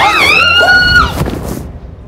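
A woman's high-pitched scream, held for about a second, then a short noisy rustle that fades out.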